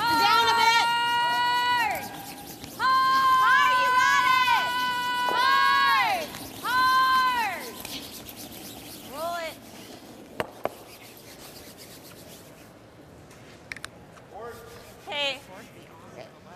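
A curler's drawn-out sweeping calls, about four long high shouts of a second or two each, rising then falling away, in the first seven seconds, then shorter calls later. About ten seconds in come two sharp clacks, granite curling stones striking each other.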